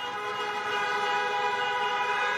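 Many car horns honking together in a sustained, steady blare: a drive-in rally audience cheering the speaker with their horns.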